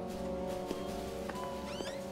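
Background score of held, sustained chords, with a few faint clicks and a brief rising tone near the end.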